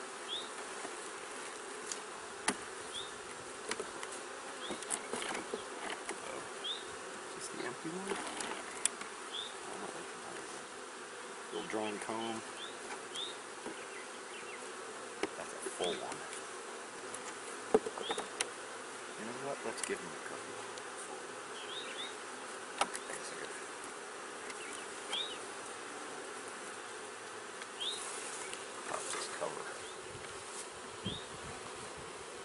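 Honey bees buzzing in a steady hum over an open hive. Scattered sharp wooden clicks and knocks come through it as the hive frames are handled.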